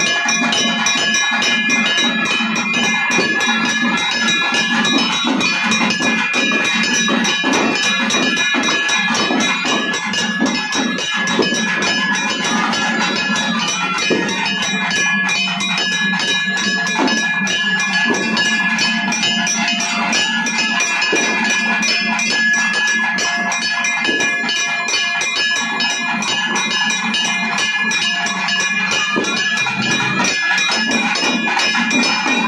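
Temple festival drum ensemble playing fast, dense beats while bells ring on steadily over them, without a break.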